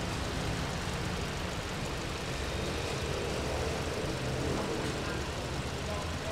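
Hyundai Tucson 1.6 turbo four-cylinder petrol engine idling steadily, heard up close in the open engine bay; the idle is smooth and whisper-quiet.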